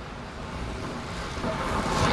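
Time trial bike with a rear disc wheel riding past close on the wooden velodrome boards: a rising whoosh of tyres and wheel that builds to a peak as it passes, near the end.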